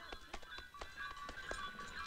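Faint ringing of caravan bells, with scattered short clicks and knocks between the rings.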